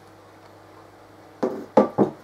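Sheet-metal case panels knocking against each other and the desk as they are set down: about three sharp knocks in quick succession in the last half second, after a quiet stretch with only a faint steady hum.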